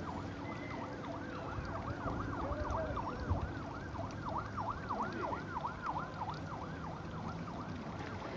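A siren rising and falling quickly in pitch, about three to four sweeps a second, over low background rumble, with one brief low bump about three seconds in.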